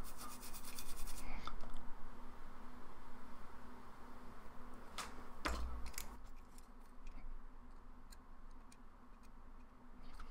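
Light scratching and rubbing from hand tools being handled and worked against a circuit board during solder-mask touch-up, densest in the first second, then fainter scattered ticks. There are two sharp clicks about five seconds in, over a low steady hum.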